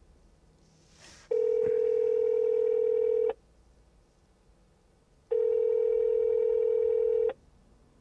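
Ringback tone of an outgoing phone call: two steady rings, each about two seconds long and two seconds apart, as the call rings unanswered.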